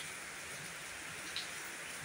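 Gentle rain falling steadily on leaves and wet concrete, an even hiss.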